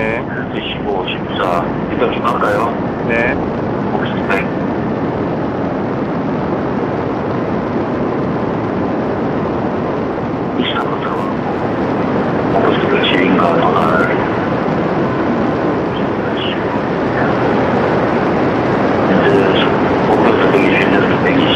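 A steady, loud rushing noise throughout, with indistinct talk from the test crew coming and going: near the start, again from about ten to fourteen seconds in, and near the end.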